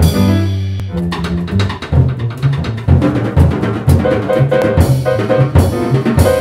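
Jazz trio of grand piano, double bass and drum kit playing together: a held chord opens, then a short fragment repeats over and over in imitation of a skipping record.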